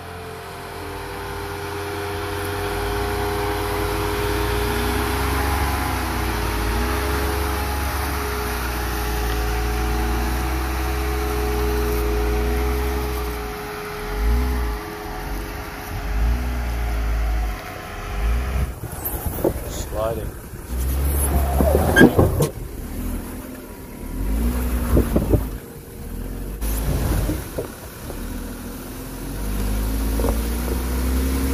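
Jeep Wrangler engine running at crawling speed over rock, its note wavering up and down as the throttle is worked. After about nineteen seconds the sound turns uneven, with short loud bursts, close beside a front tyre pressed against the rock.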